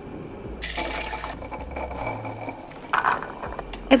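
Water sounds from a pot of azuki beans cooking in water, louder for about a second near the start and again briefly near the end.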